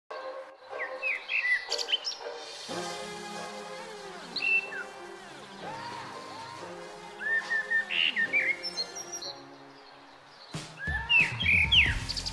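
Birds chirping, with background music of held notes coming in about three seconds in. The chirps are loudest near the end.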